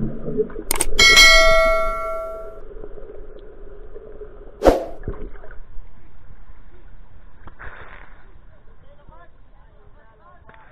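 Subscribe-button animation sound effect: a sharp mouse click followed by a bright notification-bell chime that rings out and fades over about a second and a half. A second sharp click comes a few seconds later, then only faint sounds.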